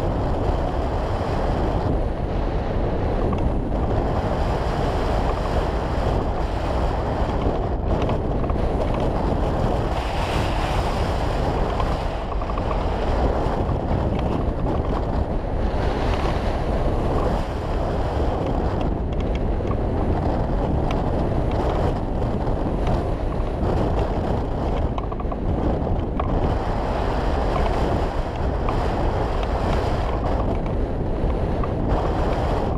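Wind rushing over a wing-mounted camera's microphone as a hang glider flies in strong, gusty wind: a steady rushing noise that swells and eases.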